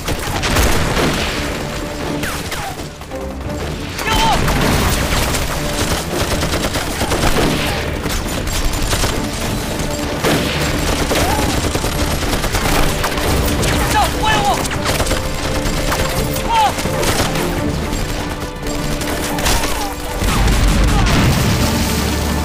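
Battle soundtrack of rifle volleys and explosions over a music score, with short shouts. A heavy explosion rumbles near the end.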